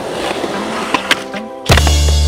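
Skateboard wheels rolling on smooth concrete, with two sharp knocks about a second in, under music; a loud deep bass note in the music comes in near the end.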